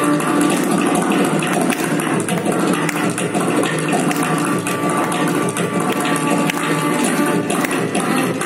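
Carnatic classical ensemble performing in raga Madhyamavathi: dense, rapid mridangam and ghatam strokes under sustained violin and vocal lines.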